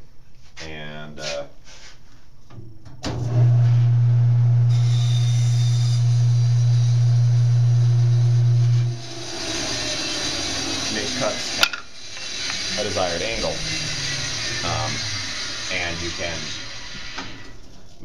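A steady low electric hum from a workshop machine starts abruptly about three seconds in and cuts off about three seconds before the middle, giving way to a hissing noise. There is one sharp click near the middle, then faint voices.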